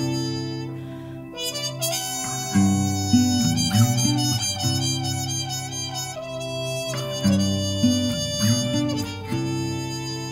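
Instrumental break in an acoustic reggae song: a harmonica plays a melody of held notes over a repeating strummed acoustic guitar pattern.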